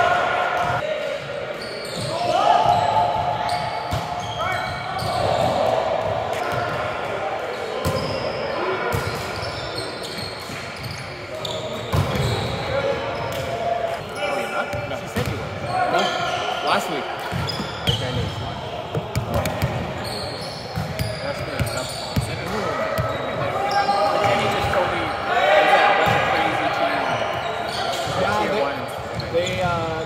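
Indoor volleyball play: repeated sharp slaps of the ball being passed, set and hit, with players shouting to each other, echoing in a large gym.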